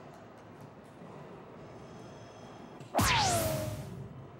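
Soft-tip electronic dartboard machine playing its bull-hit sound effect as a dart scores in the bull, about three seconds in: a sudden whooshing electronic effect with tones falling in pitch, dying away over about a second. Before it, only quiet hall background.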